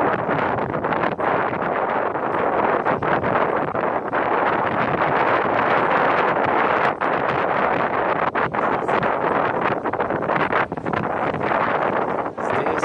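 Steady rushing noise of wind on the microphone.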